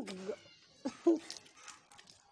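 A person's voice making two short sounds, one right at the start and another about a second in, followed by faint clicks.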